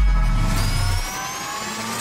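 Logo intro sound effect: a deep boom dying away over the first second, under a rising sweep of several tones climbing together in pitch.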